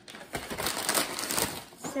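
Paper takeout bag rustling and crinkling as a hand rummages inside it: a dense run of crackles lasting about a second and a half.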